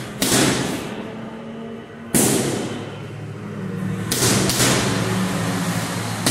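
Gloved punches landing on a hanging heavy bag: four hard hits, roughly two seconds apart at first, the last two in quick succession, each fading out over a fraction of a second.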